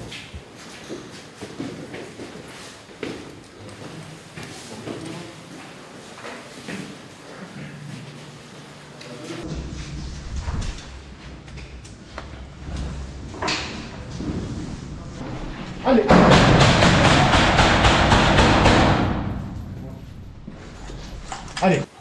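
Soldiers moving through rooms, with scattered knocks, thuds and gear rattling. About two thirds of the way in, a loud harsh noise starts suddenly, lasts about three seconds, then fades.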